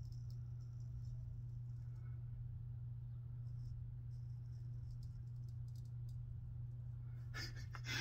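Faint scraping of a 7/8 full-hollow straight razor cutting through lathered beard stubble, coming in a series of short passes, over a steady low hum.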